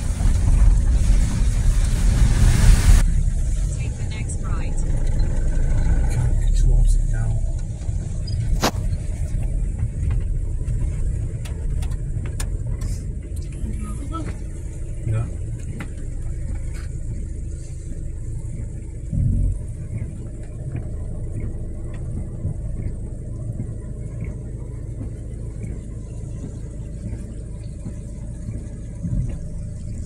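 A vehicle's engine and road noise heard from inside the cabin: a steady low rumble while driving, with a loud rushing noise over the first three seconds that then stops suddenly.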